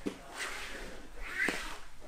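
Quiet rustling of bodies and bare skin shifting on vinyl grappling mats, with a short rising squeak and a sharp tap about one and a half seconds in.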